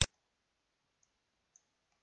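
A computer mouse button clicked once, sharply, right at the start, placing the rotation angle in a CAD rotate command. Two faint clicks follow about one and one and a half seconds in.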